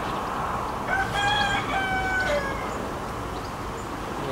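Whistle of the steam locomotive No. 6 Renshaw sounding about a second in: one short blast in two joined parts, the second a little lower and falling in pitch as it dies away, over a steady background rush.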